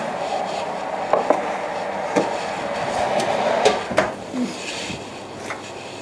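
Knocks and clatter of a container of warmed sugar being lifted out of an oven and handled, over a steady rushing hiss that drops away about four seconds in.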